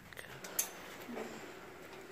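Quiet background hiss with a few light clicks in the first half second and a brief faint voice about a second in.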